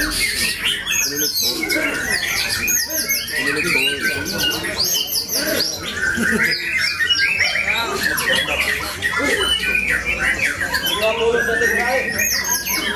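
White-rumped shama (murai batu) singing a fast, varied song, with dense overlapping chirps and trills from other caged songbirds running on without a break.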